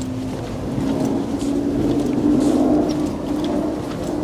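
A car passing along the street, its engine and tyre hum swelling to a peak a little past the middle and then fading.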